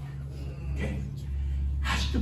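A man's sharp, gasping breath between phrases of impassioned preaching, heard over a steady low hum.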